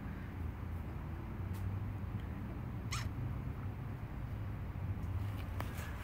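A newborn wolf pup gives one brief high squeak that falls in pitch about halfway through, while it nurses. Steady low background noise runs underneath.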